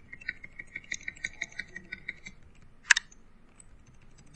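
Computer keyboard keys tapped in a quick, even run, about six a second for a couple of seconds, as the cursor is stepped up line by line through a text file; then one louder keystroke near the end.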